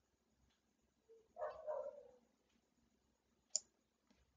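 Very quiet room tone broken by a faint, short background sound about one and a half seconds in. Near the end there is a single sharp computer-mouse click.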